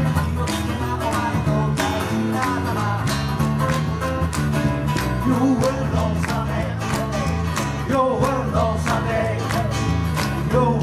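Live acoustic rock: two acoustic guitars strummed in a steady, driving rhythm over an electric bass line.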